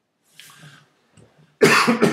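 A person coughing close to the microphone: a faint breath about half a second in, then a loud cough in two quick bursts near the end.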